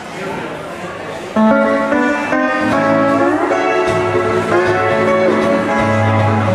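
A Hawaiian tune played on an electric steel guitar with acoustic guitar accompaniment. Notes ring softly at first. About a second and a half in, the playing comes in louder with chords and notes sliding upward under the steel bar.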